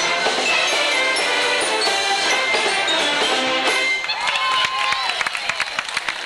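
A Mummers string band of saxophones, accordions and banjos playing a tune that ends about four seconds in. Crowd voices and scattered sharp clicks follow.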